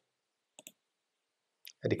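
Two quick, faint computer mouse clicks a little over half a second in.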